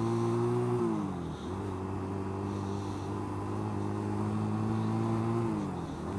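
1985 Honda Rebel 250's small parallel-twin engine running under way on the road, with wind noise. Its note drops about a second in, holds steady, and falls again near the end.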